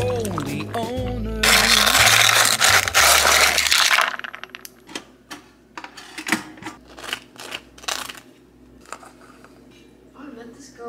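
A song with singing fades out, and a loud rushing noise follows for about two seconds. Then a table knife scrapes across a crisp toasted bagel in a run of short, quick scrapes as something is spread on it.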